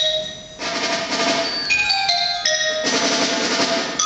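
Student concert band playing, with the percussion section to the fore. A drum-and-cymbal wash comes in about half a second in and again near three seconds, between bright high held notes from the mallets and winds.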